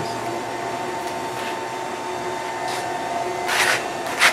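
Motor-driven turntable of an oar-shaft wind-resistance test rig spinning a rowing oar shaft at about 50 RPM: a steady motor hum with faint tones, and a whoosh of the shaft through the air about once a second, loudest near the end.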